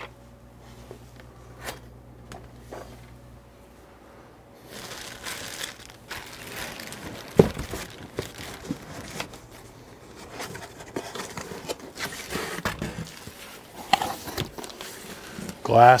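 Plastic wrap crinkling and cardboard rustling as hands rummage inside a packing box, starting about five seconds in, with scattered clicks and one sharp knock about halfway through.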